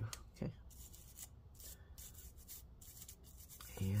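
A run of irregular, scratchy rubbing strokes on a MacBook Air logic board as corrosion residue is scrubbed at.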